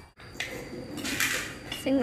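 A metal spoon clicks against a small bowl, then scrapes across it for about half a second as food is scooped up.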